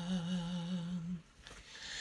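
A singer humming one held note with a slow, even vibrato, ending a little over a second in.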